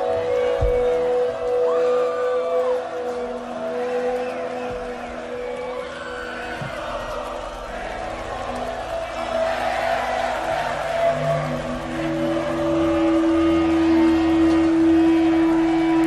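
Live rock band holding sustained, droning instrument tones over crowd noise, with a few sliding notes and a low held note swelling louder about three quarters through.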